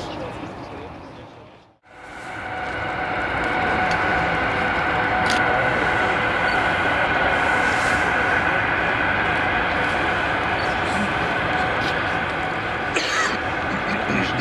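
Jet engines of an aircraft on approach: a steady rushing noise with a steady high whine on top. The sound fades out briefly and comes back about two seconds in.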